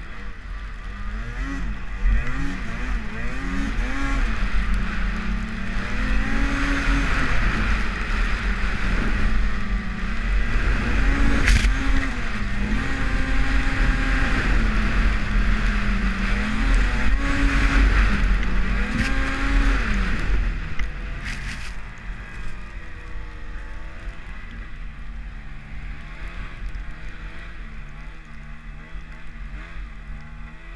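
Arctic Cat M8000 snowmobile's two-stroke twin engine revving up and down as the sled is ridden through deep powder, then easing off to a lower, quieter run about three quarters of the way through.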